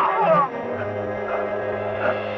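Martial arts film soundtrack: a drawn-out, falling vocal cry in the first half second, then a steady held chord of music.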